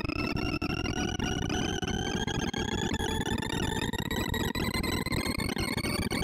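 Sorting-algorithm sonification from ArrayV: a rapid stream of synthesized beeps, one per array access, pitched by the value of the bar being touched, running an in-place merge sort on a reversed array. It blends into a harsh, noisy cacophony under one tone whose pitch climbs slowly and steadily as the sort sweeps through the rising run of values.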